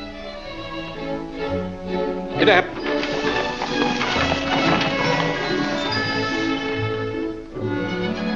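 Orchestral film score playing with sustained, held notes. A short wavering, voice-like sound rises over it about two and a half seconds in.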